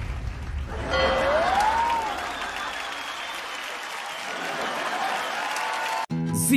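Audience applauding on a dance-show stage as the dance music fades out in the first second. A single tone rises and then falls about a second in.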